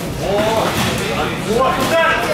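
People's voices calling out around a boxing ring, with a few sharp knocks from gloves landing during the exchange.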